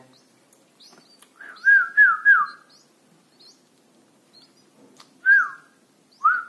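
A person whistling short notes to make red-whiskered bulbul nestlings open their mouths for food. Each note rises then drops; three come in quick succession, then one more near the end. Faint high chirps of the chicks sound between them.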